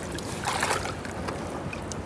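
Shallow seawater in a rocky tide pool splashing and dripping as gloved hands move through it, with a slightly louder splash about half a second in.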